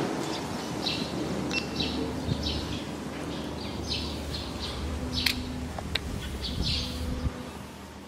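Small birds chirping in short, repeated calls over a steady low rumble, with a couple of sharp clicks about two thirds of the way in; the sound fades out near the end.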